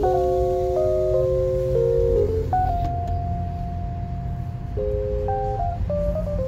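Background music: held notes that change pitch in steps, over a steady low rumble.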